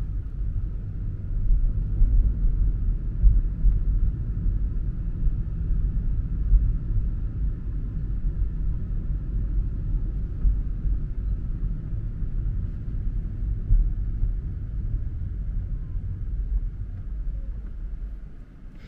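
Low, steady road rumble and tyre noise inside a moving car's cabin, easing off a little near the end as the car slows.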